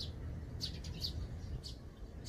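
Eurasian tree sparrows chirping: about four short, high chirps over a steady low rumble.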